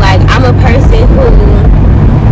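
Steady low rumble of road and engine noise inside a moving Honda minivan's cabin, with a woman's voice speaking over it for most of the first part.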